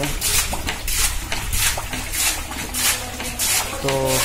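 Muddy water and sludge gushing out of the top of a borewell pipe in rhythmic spurts, about two a second, as the pipe is worked up and down by hand to sink it into the ground.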